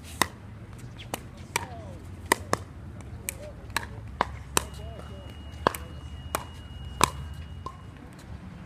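Pickleball rally: paddles striking a hollow plastic pickleball, with the ball bouncing on the hard court, giving a string of sharp pocks, irregularly spaced, roughly one or two a second.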